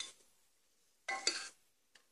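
Metal spoon scraping and stirring eggplant pieces and spiced masala against the side of an aluminium pressure cooker: one short stroke of about half a second, a little over a second in, with quiet around it.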